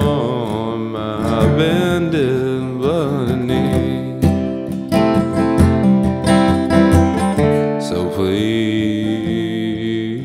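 Acoustic guitar strummed under a man's held, wavering sung notes; in the middle the guitar strums on alone, and the voice comes back near the end.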